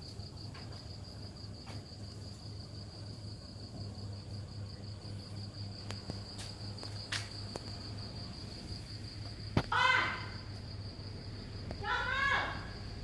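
Crickets chirping in a steady, high-pitched, finely pulsing trill over a faint low hum. About ten seconds in there is a sharp click followed by a short voice-like call.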